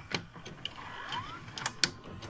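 VCR tape transport mechanism clicking as it switches from stop to play, with a short rising whine a little after one second in.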